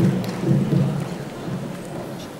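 Many footsteps of a choir filing onto a wooden stage: a shuffle of irregular low thumps.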